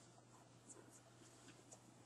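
Near silence: room tone with a faint steady low hum and a couple of faint ticks.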